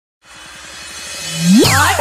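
Electronic DJ remix intro: a noisy riser with a fast low pulse swells up from nothing. About a second in, a synth tone glides sharply upward, then falling laser-like synth sweeps come in near the end.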